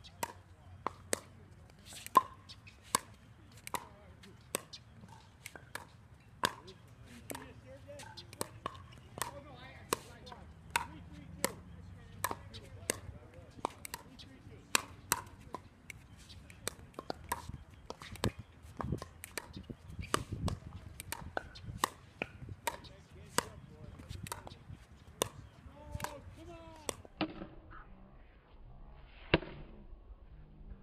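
Pickleball paddles hitting a plastic pickleball over and over in a rally, a sharp click about once or twice a second.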